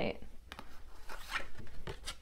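Index cards being handled: a few light rustles and scrapes of card stock.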